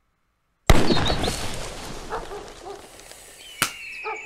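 A single loud gunshot breaks out of silence about 0.7 s in, its echo dying away slowly over the next seconds. A second short, sharp crack comes near the end.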